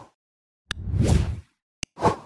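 Editing sound effect for an animated logo transition: a click, then a whoosh that swells and fades over about three quarters of a second, and another short click near the end.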